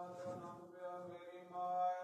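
A man chanting Sikh scripture (path) in a steady, drawn-out sing-song tone into a microphone, with short breaks for breath.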